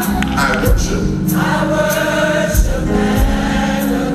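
Gospel choir singing together in sustained harmony over a steady beat.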